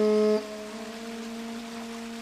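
Slow meditative music on a shakuhachi bamboo flute: a long held low note drops sharply in level about half a second in, leaving a quieter sustained tone.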